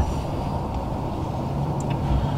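Steady low rumbling background noise, with no distinct event.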